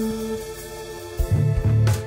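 Live instrumental jazz-hop band with guitar, electric bass, keys and drums playing. Held chords die away, and about a second in a low bass line and drums come in.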